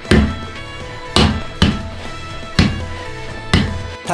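Five heavy thuds of punches striking a wooden makiwara striking board, unevenly spaced, over background music with sustained tones.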